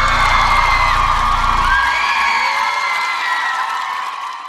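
Concert audience screaming and cheering in high-pitched cries at the end of a live pop performance. The bass of the backing music stops about two seconds in, leaving the crowd's screams.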